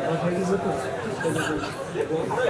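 Speech: several voices talking at once, with no other distinct sound.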